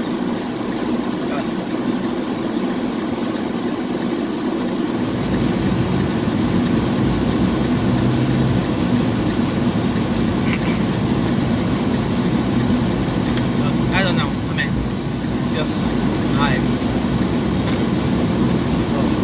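Car interior noise while driving: a steady engine and road hum, with a low rumble that grows louder about five seconds in.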